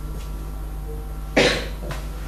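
A single cough about one and a half seconds in, over a steady low electrical hum.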